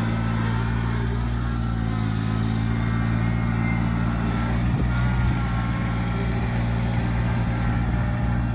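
Kubota compact tractor's three-cylinder diesel engine running steadily as the tractor drives along, with one light knock about five seconds in.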